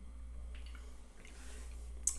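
Steady low room hum, with faint small clicks and a soft breathy hiss near the end as a man sips a drink from a glass and swallows.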